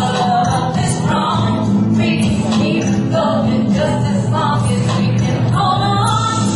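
A woman singing into a microphone over live band accompaniment with a steady beat.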